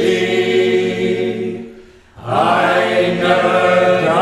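A mixed group of men's and women's voices singing a folk song together without accompaniment, holding long notes. The singing breaks off briefly for a breath about two seconds in, then the voices come back in.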